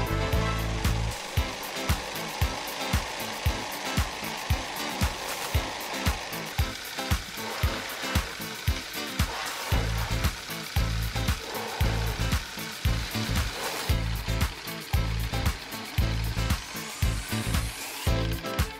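Ugears wooden pneumatic engine model running on air let out of a balloon: a steady hiss of escaping air with regular wooden clicking, under background music.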